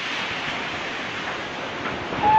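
Hurricane wind blowing hard, a steady, even rush of noise with no letup.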